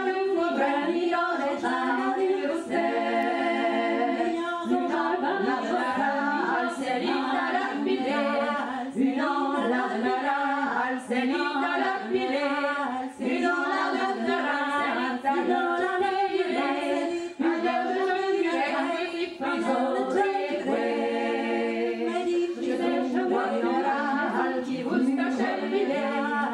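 Women's vocal trio singing a traditional Breton song a cappella, several voices in harmony.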